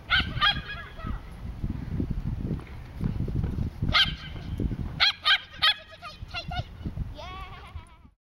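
Small dog barking excitedly in short, high-pitched calls, in clusters, during an agility run, over a low rumble of wind on the microphone.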